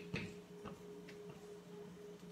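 Dry-erase markers writing on a whiteboard: faint strokes and a few light taps, over a steady low hum.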